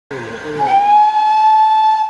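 Steam locomotive's whistle blowing one long, steady blast with a light hiss, sliding up slightly in pitch as it opens about half a second in.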